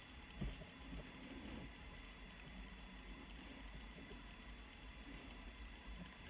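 Near silence: room tone with a faint steady high whine, and one soft tap about half a second in.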